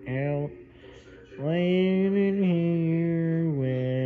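A man's voice singing or intoning long drawn-out notes: a short falling note at the start, then after a pause a long held note from about a second and a half in that steps down once in pitch and stops just before the end.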